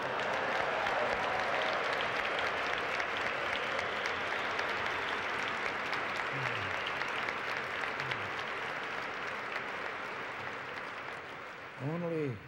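Large audience applauding. It starts at once, holds steady, then slowly dies away near the end.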